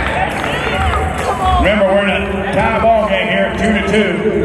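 Excited shouting and cheering from football players and sideline onlookers, many voices overlapping. A steady low hum runs underneath from about halfway.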